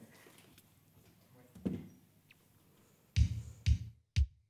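Low studio room tone, then near the end two electronic kick-drum beats half a second apart: the drum machine starting the beat of a pop song.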